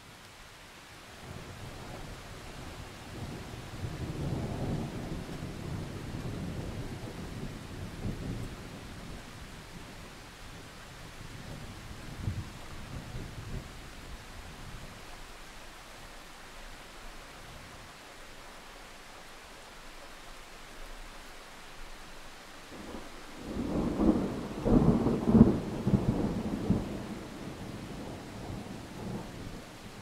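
Steady heavy rain with two rolls of thunder. A long, low rumble builds about a second in and fades by the middle, then a louder clap of thunder with sharp peaks rolls in near the end and dies away.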